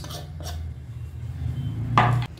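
A steady low hum that swells slightly toward the end, with faint kitchen handling and one sharp clink near the end as a metal spoon meets the glass salad bowl.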